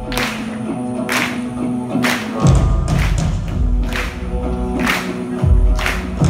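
Live band music heard from within the audience: sustained instrument and vocal notes over percussive hits about once a second, with heavy bass notes coming in about two and a half seconds in and again near the end.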